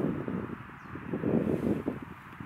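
Wind buffeting the microphone in gusts: an uneven low rushing noise that eases about a second in and then picks up again.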